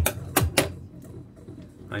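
Metal kitchen scissors clicking and clattering against the countertop as they are set down: about four sharp clicks within the first half second or so.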